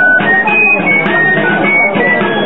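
Live Basque folk dance music: a shrill wind instrument plays a melody of short held notes, with a drum played under it.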